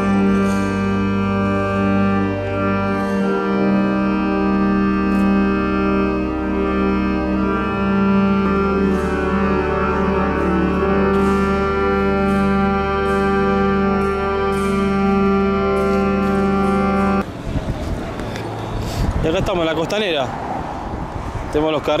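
Church organ playing slow, sustained chords. It stops abruptly about seventeen seconds in, giving way to outdoor street noise with voices and traffic.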